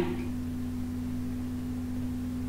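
Steady low electrical hum with a constant pitched tone, unchanging throughout.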